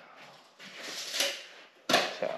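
Rustling handling noise, then one sharp knock near the end, as a pine tongue-and-groove wall board is fitted into place.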